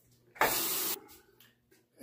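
A single sharp sniff through the nose, about half a second long, starting suddenly and cutting off just as suddenly: a shaver smelling his Derby Premium shaving soap.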